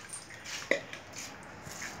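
Kitchenware handled over a stainless steel basin: one sharp, light knock a little under a second in, then faint handling sounds as wet madre de cacao leaves are pressed by hand in a metal strainer.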